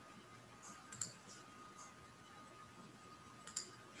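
Faint clicking of a computer mouse, a few scattered clicks with a sharper one about a second in and a quick pair near the end, over near-silent room tone with a faint steady high tone.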